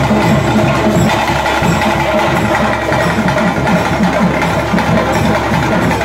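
Live traditional ritual percussion music: a group of drums played in a fast, steady rhythm, with sustained tones running over it, accompanying a bhuta kola dance.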